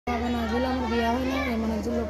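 A voice holding a drawn-out tone at a fairly steady, slightly wavering pitch, over a low steady hum.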